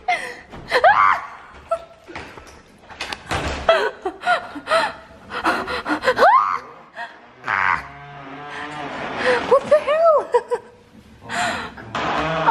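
Women gasping, letting out short squeals and exclamations, and laughing nervously in alarm.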